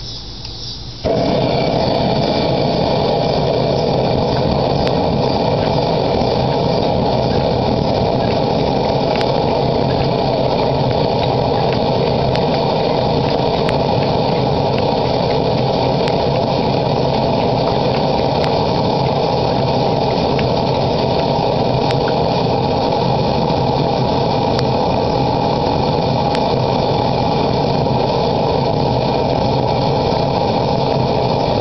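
Blowtorch lit about a second in and burning with a loud, steady hiss, preheating a Wenzel pressure lantern's burner before the lantern is pressurised.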